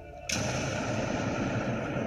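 A sudden loud boom-like hit about a third of a second in, cutting off quiet music and carrying on as a steady rumbling roar: a dramatic impact effect in a TV drama soundtrack.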